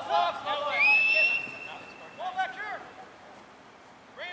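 A referee's whistle blown once in one long blast of just over a second, sliding up in pitch at the start and then holding steady, to stop play. Players' shouts come just before and after it.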